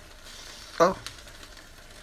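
Quinoa simmering in vegetable stock in an open stainless steel pot: a faint, steady bubbling hiss.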